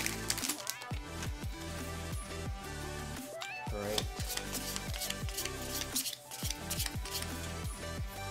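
Background music with a steady beat and held bass notes.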